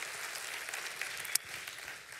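Congregation applauding, dying away about a second and a half in.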